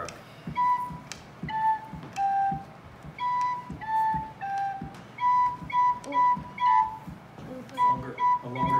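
Small wooden pipe organ (Orgelkids kit) played one note at a time with a clear flute-like tone: a simple falling three-note tune is played twice, then a quick run of repeated notes on the top note.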